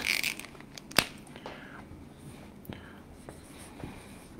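Dry-erase marker on a whiteboard: faint scratchy strokes and ticks, with one sharp tap about a second in.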